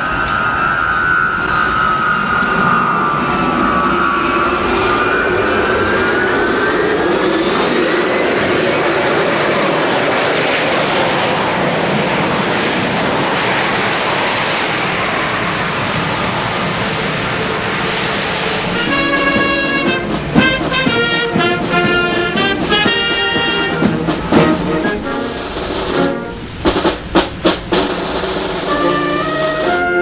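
Jet airliner landing. The engine whine glides down and then rises over the first several seconds, as the engines spool up after touchdown, and gives way to a steady rush as the aircraft rolls out. From about two-thirds of the way in, brass band music takes over, with several loud percussive hits.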